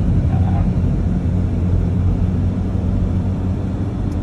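Toyota car's engine running with a low, steady hum during a test run just after a second-hand automatic gearbox was fitted, the old one having driven only in reverse.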